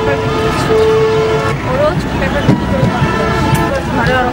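Busy street noise: many voices at once and vehicle traffic, with a horn held in two long blasts in the first second and a half.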